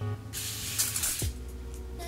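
Evian facial water spray, an aerosol can, misting onto the face in a single hiss lasting about a second.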